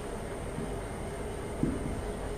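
Steady background room noise with a faint constant low hum, and one brief soft sound about one and a half seconds in.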